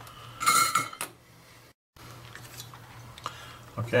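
A brief metal-on-metal clatter with a short ringing tone about half a second in, over a low steady hum; the sound drops out abruptly just before two seconds, followed by a faint click.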